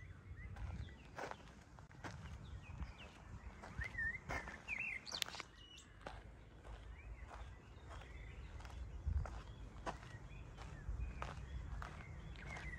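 Quiet outdoor ambience with birds chirping, including two short, clear calls about four and five seconds in. Soft, irregular footsteps sound over a faint low rumble.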